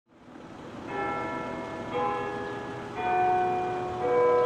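Church bells tolling: three strokes about a second apart, each on a different note and each ringing on after the strike.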